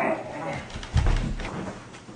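Rustling of bedding as a person rolls over on a bed, with a dull, deep thump about a second in as the body lands on the mattress.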